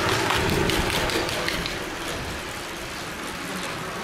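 Track racing bicycles, one with a disc wheel, passing close by on the velodrome: a rush of wheel and air noise that swells over the first second and a half, then fades to a steady outdoor background.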